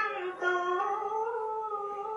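A single high voice singing a slow, drawn-out melody of long held notes that slide from one pitch to the next, like a devotional chant, with a short break about half a second in.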